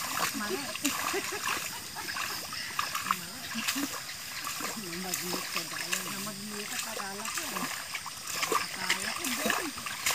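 Muddy paddy water splashing and sloshing as rice seedlings are pulled up by hand from the flooded seedbed, with short sharp splashes throughout. Indistinct voices talk underneath.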